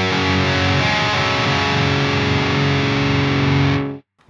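Distorted electric guitar: notes picked one after another on adjacent strings and left to ring together into a sustained chord, then cut off abruptly near the end.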